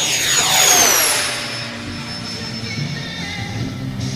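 E-flite Habu 32x's 80 mm nine-blade electric ducted fan on 8S power making a fast low pass. Its high whine is loudest just under a second in and drops sharply in pitch as the jet goes by, then carries on fainter as it climbs away. Music plays underneath.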